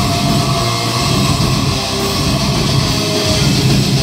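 Metal crossover band playing live, loud and steady, with distorted electric guitar, bass guitar and drum kit.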